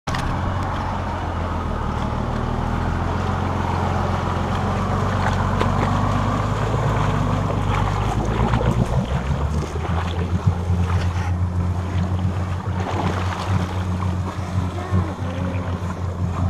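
An off-road 4x4's engine runs with a steady low drone as the vehicle wades through a deep ford. Water churns and splashes around it, louder and more uneven from about halfway through as it pushes deeper into the water.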